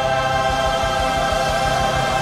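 Recorded choral music: a choir and accompaniment holding one long chord, the final note of a song.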